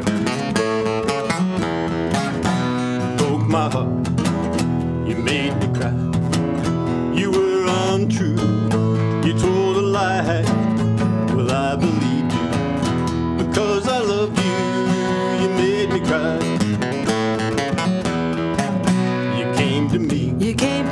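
Two acoustic guitars strummed and picked together in a country-blues style, with a voice singing over them at times.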